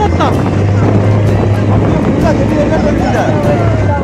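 Motorboat engine running with a steady low drone, over water rushing and splashing along the hull, with people's voices in the background.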